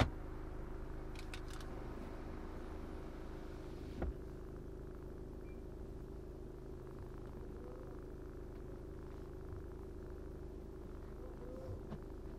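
BMW 520d F10's four-cylinder turbodiesel running steadily with an even hum that holds one pitch, with a short sharp click at the start and another about four seconds in.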